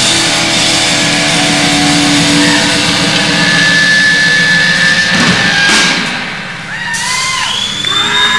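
A rock band playing live, with electric guitar and drums loud and dense. The song ends with a final hit about six seconds in, followed by the crowd whooping and cheering.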